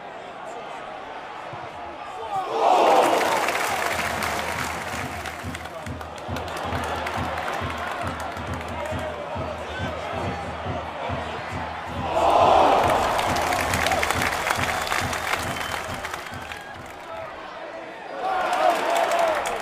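Football stadium crowd. The noise swells sharply into a roar about three seconds in and again about twelve seconds in, staying loud in between.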